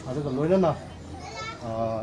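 A man speaking through a microphone and loudspeakers, with a short phrase and then a held drawn-out vowel near the end.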